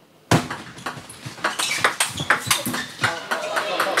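Table tennis rally: the celluloid ball clicking off rubber-faced bats and bouncing on the table, with crowd voices in the hall behind. It starts suddenly after a brief silence.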